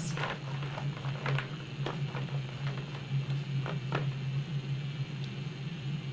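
Scattered light clicks and knocks of plastic counting bears being picked out of a metal tin and set down on a table, about ten in all and mostly in the first four seconds, over a steady low hum.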